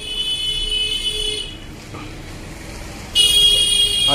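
A high-pitched, horn-like steady tone sounds twice: once for about a second and a half, then again for about a second near the end.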